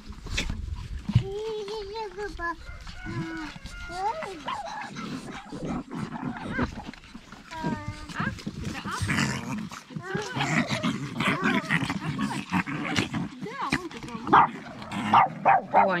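Small chihuahua-type dogs barking with short calls scattered through, mixed with people's voices.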